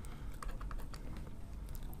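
Faint, irregular light clicks and taps of a stylus on a pen tablet as an equals sign is written.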